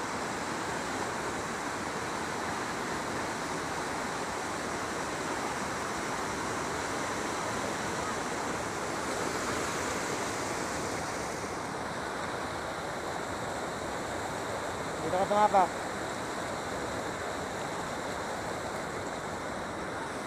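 Steady rushing of river water pouring over a concrete weir, a strong current.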